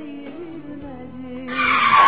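A vehicle's tyres screeching under hard braking, coming in suddenly and loudly about a second and a half in, over quiet background music.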